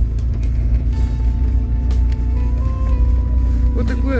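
Steady low rumble of a car's engine and tyres heard from inside the cabin while driving at low speed.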